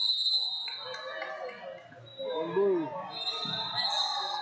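A referee's whistle blowing sharply at the start, a shrill blast of under a second, and again near the end, stopping the wrestling action. Voices carry in the hall underneath.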